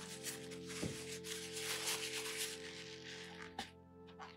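A paper tissue dabbed and rubbed on watercolour paper to lift wet paint, a soft rustling scrub over quiet background music with steady tones.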